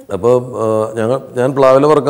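Speech only: a man talking in Malayalam, with some long, level-pitched vowels.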